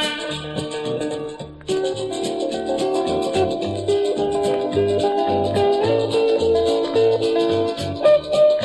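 Instrumental break in a country song, with no singing: a lead melody of held notes over a pulsing bass line and an even, rattling percussion beat. The band drops out briefly about a second and a half in.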